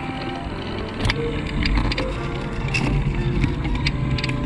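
Background music over a steady rumble of wind and tyres from a mountain bike rolling along a grooved concrete road, with scattered light clicks and rattles.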